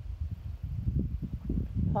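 Wind buffeting the phone's microphone: an uneven low rumble that rises and falls.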